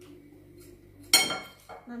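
Metal cutlery striking a bowl once about a second in: a single sharp clink that rings briefly and dies away.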